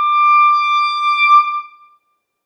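Solo modern clarinet holding one long high note, the closing note of the piece, which swells slightly and then stops about three quarters of the way through.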